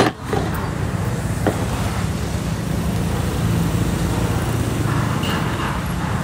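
Steady rumble of road traffic on the street, with a faint click about one and a half seconds in.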